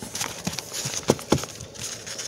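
Handling noise from a hardcover sketchbook and the phone: a few light knocks about a second apart over a rustle of cover and paper.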